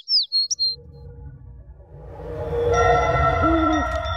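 Bird chirps in a music video's soundtrack: a few quick, falling whistled chirps in the first second. Then a low rumble and sustained chords swell in and grow steadily louder.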